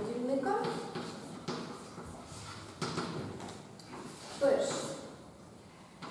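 Chalk on a blackboard: a few sharp taps and scratches as a line is written, with brief snatches of a woman's voice.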